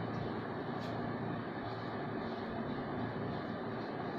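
Steady background hiss with the faint scratch of a marker writing on a whiteboard, and one light tap about a second in.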